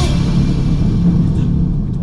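Dramatic sound effect added in editing: a sudden hit followed by a loud, low rumbling boom that holds steady.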